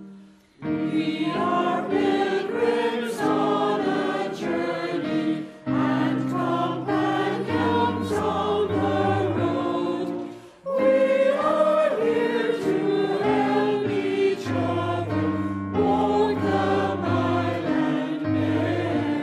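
Mixed choir of men's and women's voices singing, with short breaks between phrases about half a second in, near six seconds and again near ten and a half seconds.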